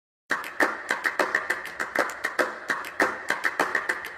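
A fast, uneven run of sharp clicks or taps, about five or six a second, starting a moment in.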